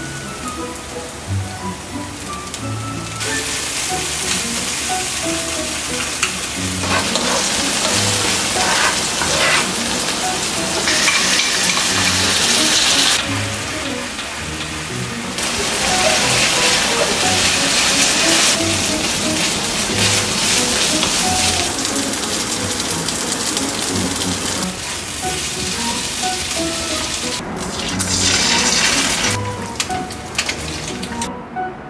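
Oil sizzling in a frying pan as scallions, kimchi and rice are stir-fried, with an egg frying near the end. The sizzle comes in a few seconds in and swells and eases in several stretches, over soft background music.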